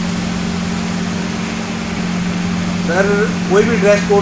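A steady low hum and hiss of background noise, with a man's voice resuming speech about three seconds in.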